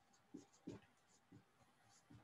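Dry-erase marker writing on a whiteboard: a few short, faint strokes over near silence.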